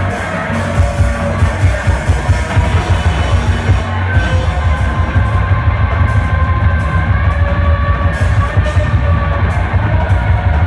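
Live noise-rock band playing loud: electric guitars over a drum kit, a dense unbroken wall of sound with a heavy low end.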